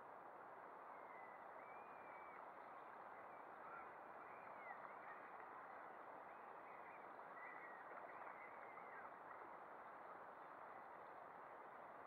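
Near silence: a faint steady hiss with a scatter of faint, short high calls from distant birds.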